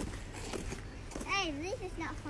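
A young boy's voice: one brief, high, wavering vocal sound about a second and a half in, with no clear words, over faint outdoor background noise.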